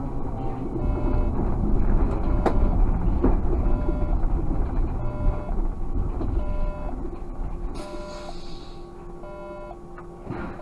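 Škoda 30Tr SOR trolleybus heard from the cab, its low running and road rumble fading as it slows to a stop. A short electronic beep repeats about once a second, and there is a sharp click about two and a half seconds in.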